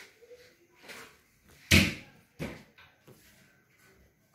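Two sharp knocks about three quarters of a second apart, the first the louder, with a few fainter taps around them.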